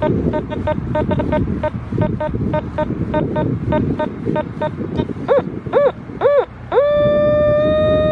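Teknetics T2 metal detector sounding off over a buried target it reads as 83: short repeated beeps about four a second, then three tones that rise and fall in pitch as the coil passes over the spot. Near the end comes one steady held tone as the coil settles over the target, pinpointing a strong, repeatable signal about five inches down.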